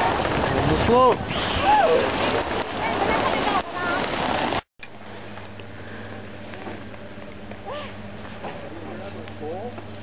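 People's voices over a loud, steady noise, cutting off abruptly about halfway through. Then it is much quieter, with faint voices over a low steady hum.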